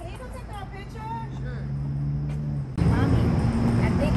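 Outdoor ambience: people talking faintly over a steady low hum, which gets louder about three seconds in.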